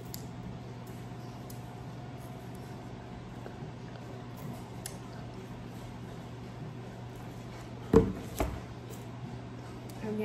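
Thick applesauce being sucked up through plastic straws from jars: quiet wet slurping over a steady low hum, with two short, louder sounds close together about eight seconds in.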